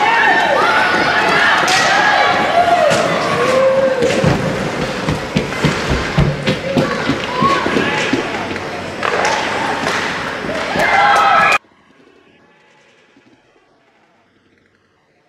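Ice hockey rink game sound: voices calling and shouting over repeated sharp clacks and thuds of sticks and puck on the ice and boards. Near the end the sound cuts off abruptly, leaving only a faint murmur.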